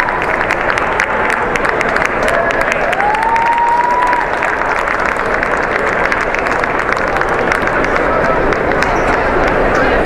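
Arena crowd applauding and chattering, with scattered hand claps that thin out after about halfway. A single drawn-out call rises in pitch about three seconds in.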